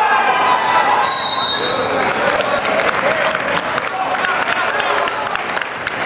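A referee's whistle blows once, a short steady shrill tone about a second in, stopping the action. Around it are gym crowd noise and voices, and thumps and scuffs from the wrestlers on the mat.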